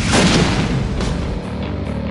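Film-trailer music with a loud booming hit at the start that fades away over about a second and a half, leaving a low sustained tone.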